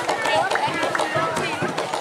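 Several voices shouting and calling over one another, with rapid sharp clashing clicks underneath.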